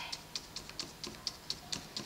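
A paintbrush stippling paint through a paper doily onto paper: light ticks of the brush tip on the paper, about four a second.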